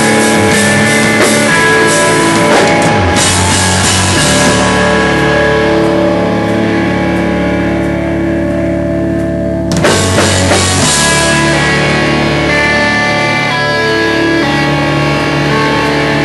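Hardcore band playing live: loud distorted electric guitars over a drum kit. About three seconds in the drums and cymbals drop away, leaving held guitar chords ringing. The full band comes back in suddenly at about ten seconds.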